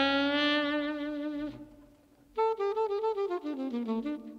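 Alto saxophone playing alone, without the band: a long held note with a slight waver, a short pause, then a quick run of notes falling in pitch.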